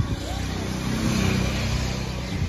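A motor vehicle engine running close by with a steady low hum that swells slightly about a second in, over general street noise.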